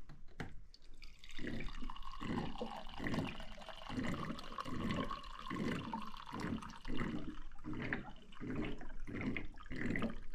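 Water being poured into a drinking container, splashing in uneven pulses from about a second in.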